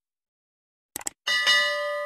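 Subscribe-button animation sound effects: a quick double click about a second in, then a notification-bell ding that rings on and fades slowly.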